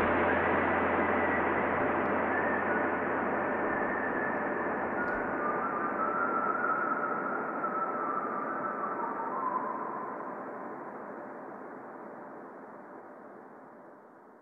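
Closing logo sound: a hazy, rushing wash with a few faint high tones drifting through it, fading slowly towards silence. A low hum beneath it stops about halfway through.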